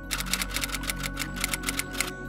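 Typewriter keystroke sound effect: a rapid run of sharp clacks, about seven a second, over a steady ambient music pad.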